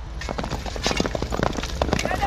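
Several horses galloping over sandy ground: a rapid, irregular drumming of hoofbeats that starts a moment in.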